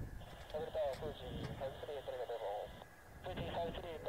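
Air-band radio chatter, tower or pilot voice transmissions heard through a receiver's speaker, in two spells of talk, with faint jet engine rumble underneath.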